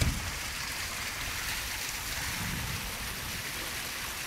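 Steady rushing hiss of water running down the water slides.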